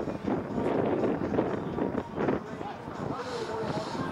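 Wind buffeting the microphone, mixed with indistinct voices.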